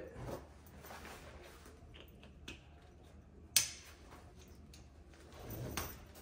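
Quiet handling of the rolled-up bug screen and awning pole, with a few small ticks and one sharp click about three and a half seconds in as a clip is snapped shut.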